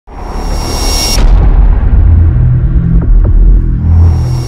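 Intro logo sound effect: a loud rush of noise with a thin high whine that cuts off about a second in, then a deep booming bass rumble with a couple of short clicks.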